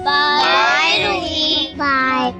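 Several young girls' voices calling out together in unison, high-pitched: one long drawn-out call, then a shorter one near the end.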